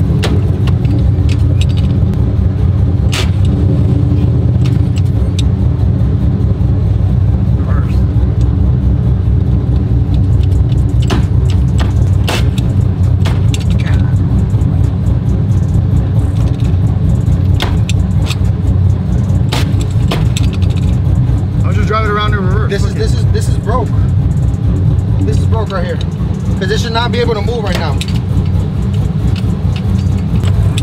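Truck engine idling with a steady low rumble. Sharp clicks come now and then as the sequential shifter is worked, trying to get the transmission out of reverse and into first.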